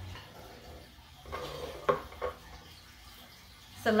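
Bowls being shifted and set down on a wooden tabletop: a brief scuffing about a second and a half in, then two light knocks about a third of a second apart.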